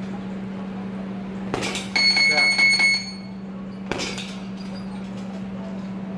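A sharp knock, then about a second of bright, high-pitched metallic ringing, and a second knock a couple of seconds later, over a steady low hum.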